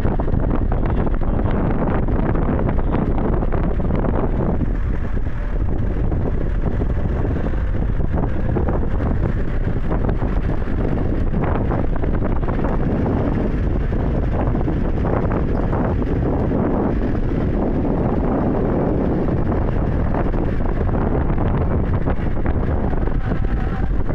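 Wind buffeting the microphone in a moving vehicle, over the vehicle's engine and road noise, loud and steady.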